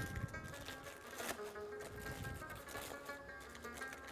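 Soft background music of held, sustained notes, with a faint knock about a second in.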